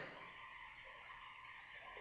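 Near silence: faint steady room tone between spoken phrases.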